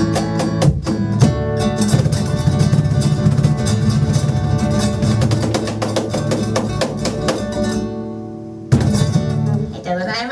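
Acoustic guitar and cajon playing the close of a song: fast, strummed guitar over sharp cajon strokes. The music thins out near the end, then a final hard-struck chord about nine seconds in is left to ring.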